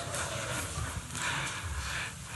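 Quiet footsteps of a man walking across a stage, a step about every half second, over the room's faint background.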